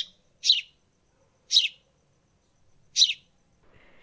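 A small bird chirping: four short, high chirps spaced unevenly over a few seconds.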